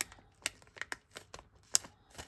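Small clear resealable plastic bag of nail-art gems being turned in the hands: the plastic crinkles softly and the gems shift with a few sharp clicks, the loudest near the end.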